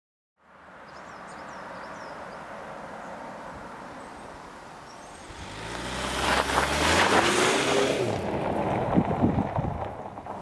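A car passing by outdoors: engine and tyre noise builds from about halfway through, peaks, then fades away. Faint high chirps sound over the outdoor background early on.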